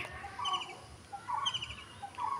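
A bird chirping faintly: two short rapid trills of high notes about a second apart, with lower single calls between them.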